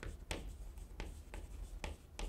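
Chalk writing on a chalkboard: about five short, faint scratches and taps as a word is written.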